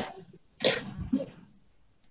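A person coughing once, briefly, about half a second in.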